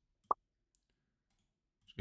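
A single short click of a computer mouse button about a third of a second in, followed by a much fainter tick.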